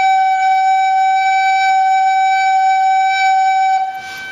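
A recorder holding one steady, loud note against a continuous electronic reference tone; the note is meant to sit on the reference pitch despite being blown loud. The recorder note stops just before the end, leaving the reference tone.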